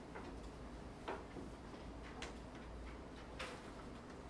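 Quiet library reading room ambience: a steady low hum under faint room noise, with a few soft clicks and taps about a second in, just past two seconds and again past three seconds.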